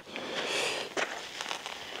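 Soft rustle of clothing and belt gear, loudest about half a second in, followed by a few faint clicks, as a hand reaches for a pistol magazine in a belt pouch.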